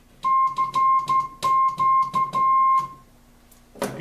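Kenwood TS-940 transceiver's CW sidetone: a steady tone keyed on and off in Morse dots and dashes for about three seconds, with a sharp click at the start and end of each element. The clicks are the noise heard with the CW volume turned up, which the owner thinks the radio has always made.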